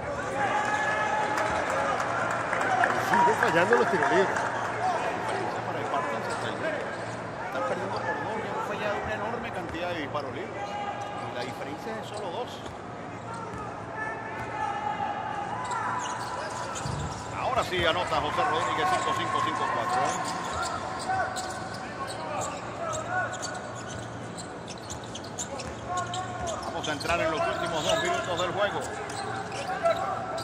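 Live basketball play on a hardwood court: the ball bounces, sneakers squeak in short bursts, and players' voices call out across the court, with a sharp impact about seventeen seconds in.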